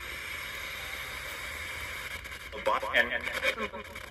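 Spirit box radio scanning: steady static hiss for the first two and a half seconds, then short, choppy fragments of voices from the stations it sweeps through.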